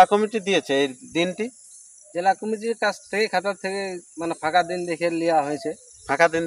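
Men talking, over a steady high-pitched drone of insects such as crickets.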